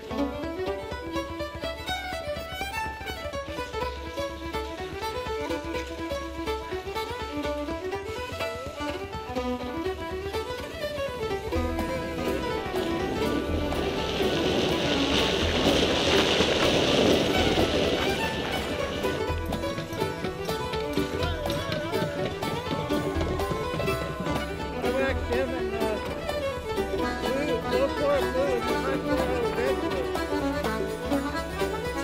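Background music led by a fiddle, running through the whole stretch. A rush of noise swells under it for a few seconds in the middle.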